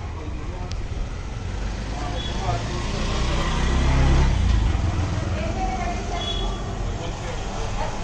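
Low rumble that swells about halfway through, with indistinct voices in the background.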